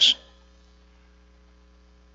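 Faint, steady electrical mains hum in the audio system: a low buzz with a few evenly spaced higher tones above it, left exposed as the last word of speech cuts off right at the start.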